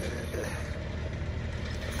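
Steady low hum of a running engine or machine in the background, with an even outdoor background noise.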